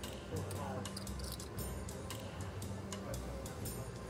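Quiet background music with a low, pulsing bass line under faint murmured voices, with scattered light clicks of poker chips being handled at the table.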